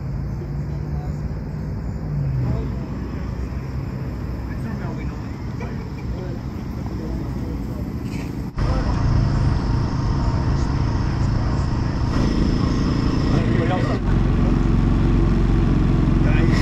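A steady low engine hum with indistinct voices in the background. The hum drops slightly in pitch about two seconds in, and a cut just past the middle brings a louder, steadier low hum.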